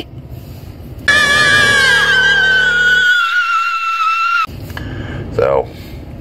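A vehicle's brakes squealing: one loud, shrill, high-pitched squeal starting about a second in. It slides slightly down in pitch over about three and a half seconds and then cuts off suddenly.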